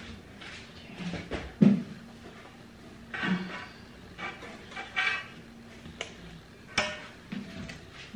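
Silicone pastry brush brushing oil around a round aluminium cake pan, its handle and head knocking and scraping on the metal in a few sharp clinks, the loudest about a second and a half in and another near the end.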